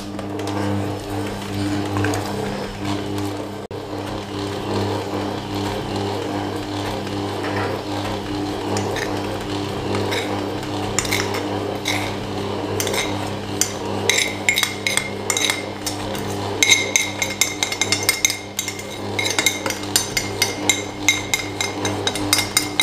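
Electric stand mixer running steadily, its motor humming as it mixes bread dough in a stainless steel bowl. From about halfway, light clinks and ticks come in quick succession, growing denser near the end, as flour is scraped in from a china plate with a metal spoon.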